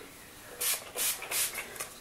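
Heat protection spray misting from a hand-pump spray bottle onto damp hair: four short hissing sprays in quick succession, about three a second, beginning about half a second in.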